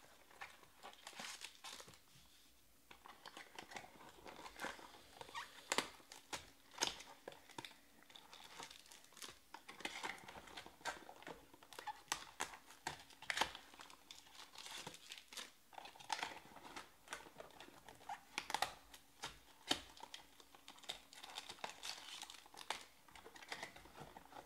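Trading cards being handled and sorted by hand: soft, irregular clicks and rustles of card stock sliding together, with some crinkling of packaging.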